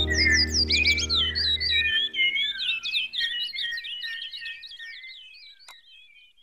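The song's last chord dies away over the first two seconds under birdsong: a busy run of quick chirps that fades out toward the end. A single short click comes near the end.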